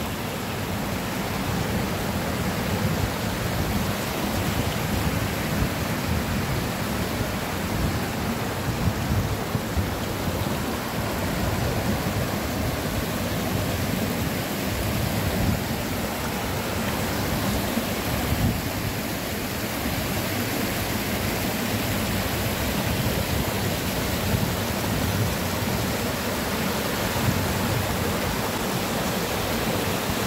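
Shallow rocky stream rushing over flat stones and small stepped cascades: a steady, loud rush of water with no let-up.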